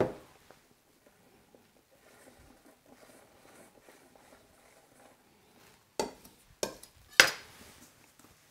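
Faint scraping of a spatula spreading chocolate ganache over a cake layer, followed near the end by three sharp knocks of utensils or the cake board on the worktop, the last the loudest.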